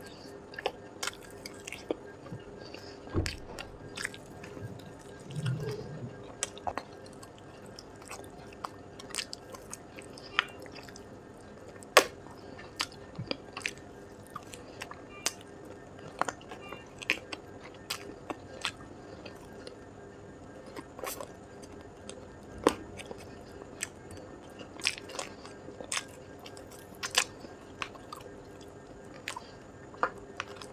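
Close-miked biting and chewing of spicy chicken tikka on the bone: wet mouth clicks and smacks come at irregular intervals, a few sharper and louder than the rest, over a faint steady hum.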